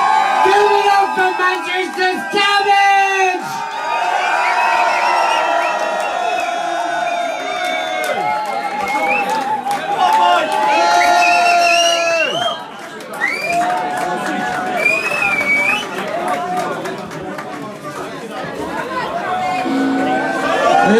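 Gig audience cheering and shouting, with drawn-out calls and whoops from many voices at once.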